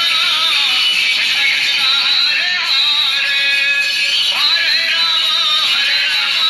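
Devotional kirtan music: voices singing a flowing melody over instruments. It sounds thin, with little bass.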